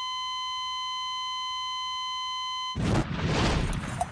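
Heart monitor flatline: one steady, high electronic tone held for nearly three seconds, the sign of cardiac arrest. It cuts off suddenly and is followed by a loud rushing noise lasting about a second.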